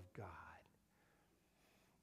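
Near silence: faint room tone in a pause in a man's speech, after his last word fades out in the first half-second.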